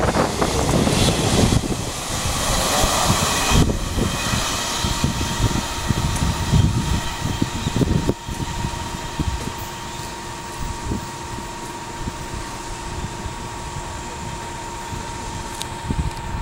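Container wagons of a freight train passing close at speed: a loud rolling rush with wind buffeting the microphone, fading over the first few seconds as the end of the train draws away. About five seconds in, a steady high tone comes in and holds under gusts of wind.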